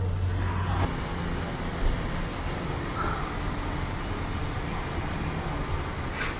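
Street traffic noise: a steady rumble of road vehicles, with a low engine hum that cuts off a little under a second in.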